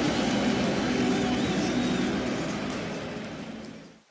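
Large football stadium crowd roaring, with chanting running through the noise, fading out over the last second and a half.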